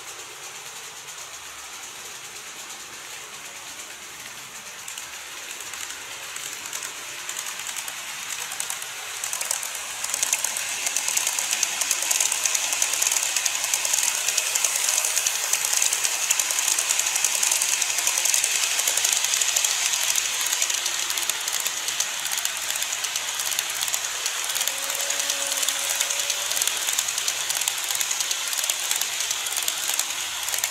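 Model of a JR East Yamanote Line commuter train running on its track: a dense, high, rapid clatter of small wheels on the rails. It grows louder from about six seconds in and then stays steady.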